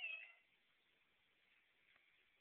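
A calico cat meowing once, briefly, right at the start.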